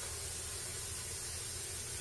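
Electric heat gun running: a steady blowing hiss with a low hum from its fan motor.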